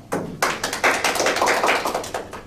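A handful of people applauding in a small room: quick, dense hand claps that start just after a speech ends and die down near the end.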